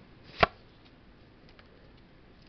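A single sharp tap about half a second in, followed by a few faint ticks, as Pokémon trading cards are handled and knocked together in the hand.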